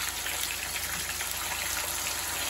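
Seasoned crocodile fillets frying in hot oil in a pan: a steady sizzle with fine crackling.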